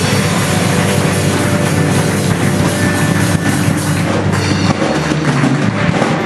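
Live blues-rock band playing a boogie: busy drum kit and cymbals over electric guitar, with harmonica.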